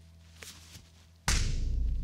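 A faint tick or two, then a little over a second in a sudden heavy low thump with a hiss trailing off above it, running on as a low rumble.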